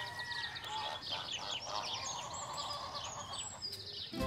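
Birdsong sound effect: many short chirps and twitters over a faint hiss, with one longer call that rises and then holds in the middle.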